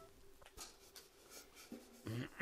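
Near silence: room tone with a few faint small clicks and rustles.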